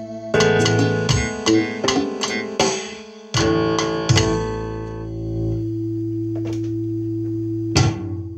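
Piano played: a run of notes and chords in quick succession, then a chord struck a little over three seconds in and held steady for about four seconds before new notes come in near the end.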